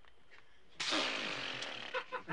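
A sudden spitting spray of liquid about a second in, a loud hiss that dies away over about a second.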